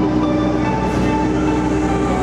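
Caterpillar mini excavator's engine running steadily while it holds a large boulder in a lifting strap.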